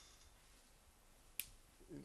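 Near silence, broken once by a single short, sharp click about one and a half seconds in.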